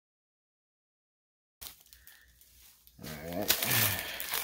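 Complete silence for the first second and a half, then faint handling noise. From about three seconds in, plastic wrapping crinkles and rustles loudly as packaged parts are handled.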